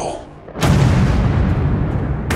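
A deep cinematic impact boom hits just over half a second in, its low rumble carrying on heavily afterwards, after the tail end of a spoken line.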